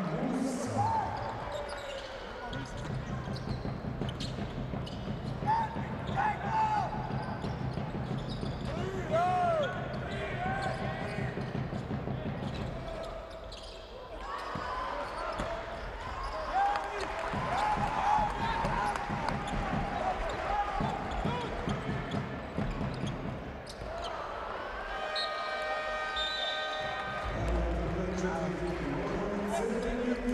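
Courtside sound of a basketball game in an arena hall: the ball dribbling, sneakers squeaking on the hardwood and voices in the hall. Near the end the end-of-quarter horn sounds for about two seconds.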